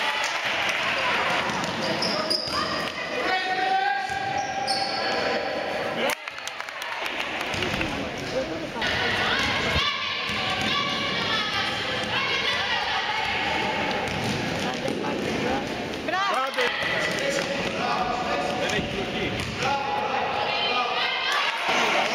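Basketball dribbled on a gym floor during a game, under near-constant shouting voices of players and spectators.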